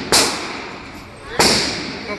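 Two gunshots in an indoor shooting range, about a second and a quarter apart, each sharp crack followed by a long echoing tail off the range walls.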